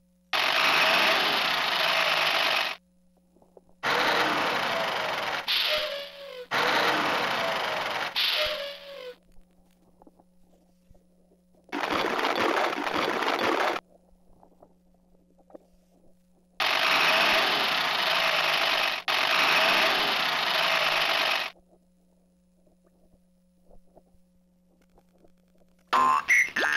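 Bright Starts Swirl and Roll toy truck sending out bursts of loud rushing noise, five of them from one to five seconds long, each starting and stopping abruptly, with short quiet gaps between.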